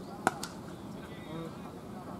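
Cricket bat striking a cricket ball: a single sharp crack, followed a moment later by a fainter click, with faint distant voices in the background.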